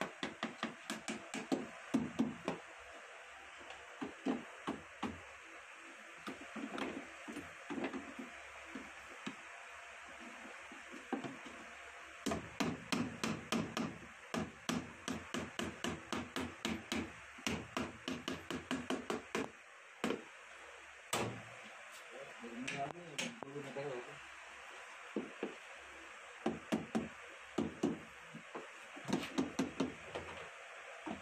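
Repeated sharp hammer taps on the lead posts and cover of a tubular battery being assembled. They come in quick runs of several strikes with short pauses between.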